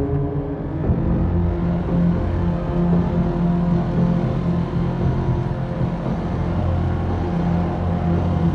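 Dark, ominous film score with a motorcycle engine running steadily underneath.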